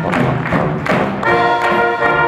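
Youth fanfare band playing live: saxophones, trumpets, trombones and sousaphone over a steady drum beat, about two hits a second. The brass chords thin out briefly and come back full a little over a second in.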